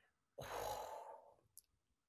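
A woman sighing, one breathy exhale of about a second, as she is stumped by a question.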